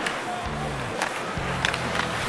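Hockey arena sound during live play: crowd noise under steady, music-like low tones, with two sharp clicks of sticks on the puck, one at the start and one about a second in.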